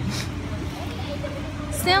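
A steady low engine hum, with a short hiss just after the start and faint voices in the background.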